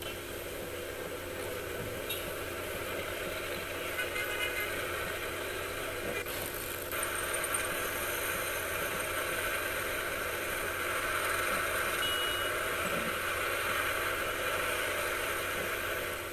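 Steady city road traffic: cars, buses and motorcycles running in a busy stream, with a couple of short high beeps.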